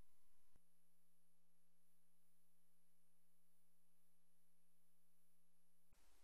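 Near silence: only a faint, steady hum of a few held tones, dropping slightly in level about half a second in.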